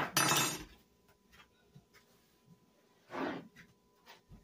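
A brief clink with a short ring of kitchenware being handled, then mostly quiet with a soft scrape or rustle about three seconds in.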